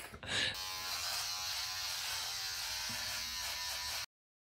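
Electric shaver buzzing steadily as a head is shaved down. It starts about half a second in and cuts off suddenly at the end.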